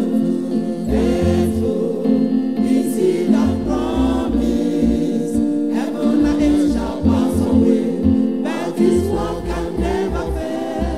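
A church choir singing a gospel song, men's and women's voices together, over low bass notes.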